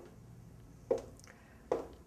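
Footsteps of a woman walking in heeled shoes on a wooden floor: sharp heel strikes a little under a second apart.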